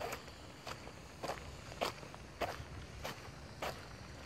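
Footsteps of a person walking at a steady pace on wet, gravelly ground: seven short crunching steps, a little over half a second apart.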